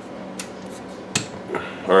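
An AR-15 rifle handled on a wooden desk: a light click about half a second in, then a sharper knock a little past one second as the rifle is set down upright on its buttstock on the desktop.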